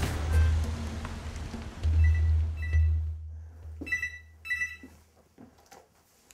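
Background music ending on a deep bass note that fades over the first three seconds, followed by four short high electronic beeps in two pairs, the second pair louder.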